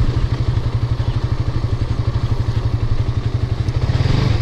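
Suzuki GSX-S 150's single-cylinder engine running steadily, a rapid low pulsing, as the motorcycle is ridden over a rough, stony dirt track.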